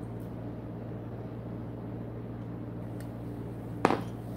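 Steady low hum of room tone, with a faint tick about three seconds in and a short knock just before the end.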